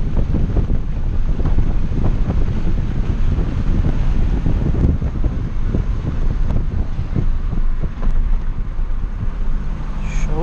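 Inside the cabin of a Hyundai HB20 with a 1.0 three-cylinder engine at highway speed: steady deep road and wind noise. The stock engine and exhaust are hardly heard under it as the car slows in the last few seconds.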